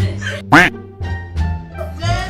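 Background music under women's voices, with one short, loud squawk about half a second in that rises and falls in pitch and is the loudest sound.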